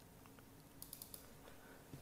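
Near silence with a few faint, quick clicks at a computer about a second in.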